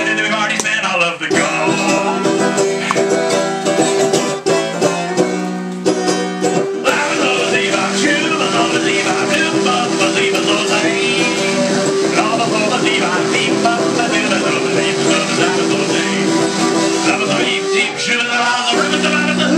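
Banjo played in an instrumental passage of a song: busy plucked and strummed notes, settling into a steadier repeating pattern about seven seconds in.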